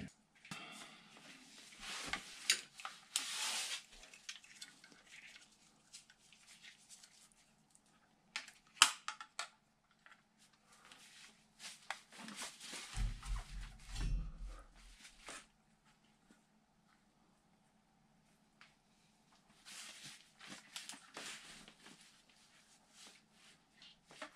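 Handling noise from hands working on the burner wiring and moving the camera: scattered rustling and crinkling with sharp clicks, one loud click about nine seconds in, and a low rumble a few seconds later. It goes nearly quiet for a few seconds after that.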